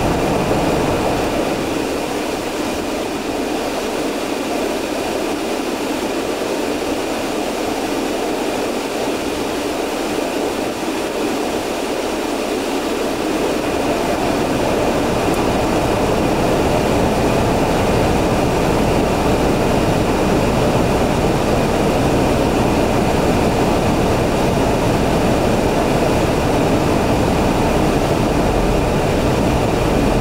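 Steady noise inside a car waiting with its engine running, heard from the cabin. A deeper rumble fills in about halfway through, and the sound grows a little louder.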